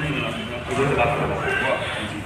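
Several men's voices talking over one another in the background, with no clear words.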